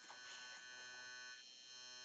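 Faint, steady electrical buzz, a stack of even tones, coming through a video call from a failing microphone. It dips briefly about one and a half seconds in.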